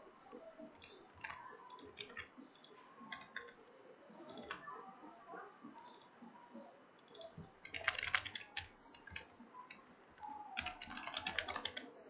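Computer keyboard typing, faint: scattered single keystrokes, then a quick run of keys about eight seconds in and another near the end.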